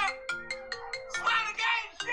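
Music with a simple melody of short notes stepping up and down, with voices over it.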